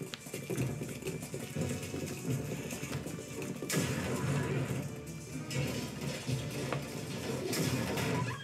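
Animated series soundtrack: dramatic score music with a surge of noisy sound effects about four seconds in and another near the end.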